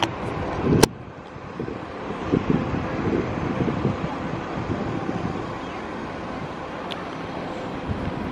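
Wind buffeting the microphone over outdoor ambience, with one sharp click a little under a second in.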